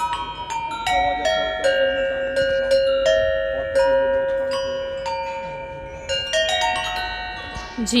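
Handmade Gujarati copper bells of graded sizes, mounted in a row on a wooden stand and played with a wooden mallet. It is a run of single struck notes of different pitches, about two a second, each ringing on and overlapping the next, so they make a tune.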